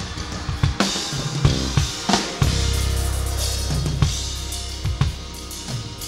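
Drum kit hits over low held bass notes from the backing band, with no singing, heard as stage bleed on a live vocal microphone.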